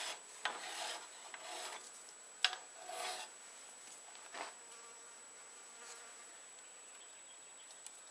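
Hand filing of a small pin to size: several scraping file strokes in the first half, then it dies away to a faint hiss.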